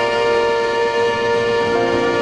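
Jazz horn section of saxophones, trumpet, cornet and trombone holding long notes together.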